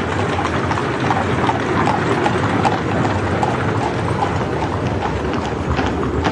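Footsteps of a large crowd walking on a hard street: a dense, irregular clatter of many boots over a steady background noise.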